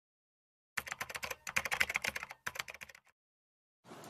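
Typing on a keyboard: rapid key clicks in three quick runs, starting under a second in and stopping about three seconds in.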